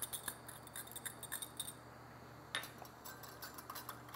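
Faint light clinks and taps of a ceramic ramekin and wire whisk against a glass measuring cup as minced garlic is scraped in: scattered small ticks in the first second and a half, then one sharper click about two and a half seconds in.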